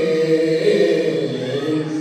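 A man chanting a manqabat, a devotional praise poem, in Gilgiti, unaccompanied and amplified through a microphone, with long held, gliding notes.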